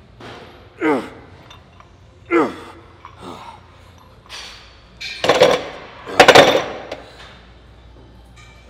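A man's voice: two short groans that fall in pitch, about one and two and a half seconds in, then two loud, harsh bursts of breath forced out through the mouth about a second apart, as he tries to spit out a hair.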